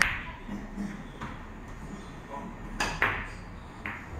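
Sharp clicks of billiard balls striking one another, each with a short ring. One comes at the start and the loudest about three seconds in, with fainter clicks between them.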